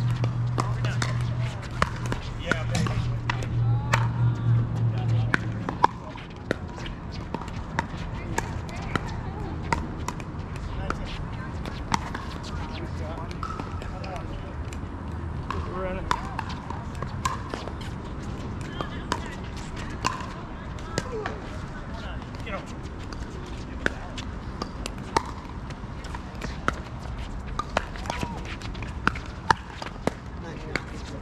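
Pickleball paddles striking hard plastic balls: sharp pops at irregular intervals, from more than one court, with indistinct voices. A low steady hum runs under the first five or so seconds, then drops away.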